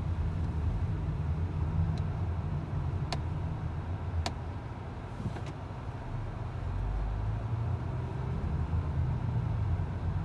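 Road noise inside a car cabin: a steady low rumble of engine and tyres while driving slowly through town. A few sharp ticks about a second apart come around the middle.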